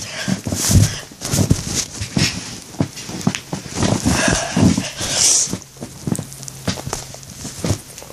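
Irregular knocks, thumps and rustling from close handling, as plush pillows are gathered and set down right by a phone lying face-up.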